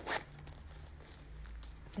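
The zip of a small wallet pouch is pulled once, briefly, right at the start, over a faint low hum.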